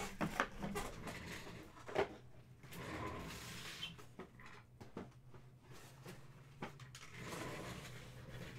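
A white cardboard trading-card box being handled and set down on a table: scattered light knocks and clicks, with a soft sliding, rustling stretch about three seconds in.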